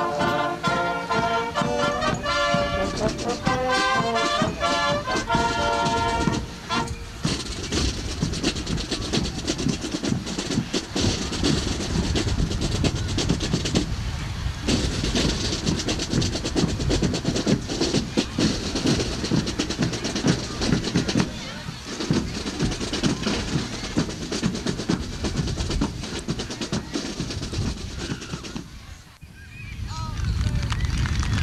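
Marching show band's brass section playing a tune, stopping about six seconds in, followed by a long stretch of dense applause from the crowd.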